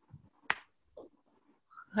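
A single sharp click about half a second in, with a couple of faint short sounds after it.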